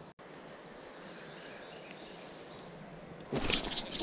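Faint, steady outdoor background, then about three seconds in a sudden loud burst of handling noise as the rod and camera are grabbed when a trout takes the bait.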